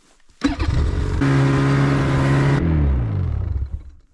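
An engine runs loudly on a steady note from about half a second in; near the end its pitch drops and it fades away.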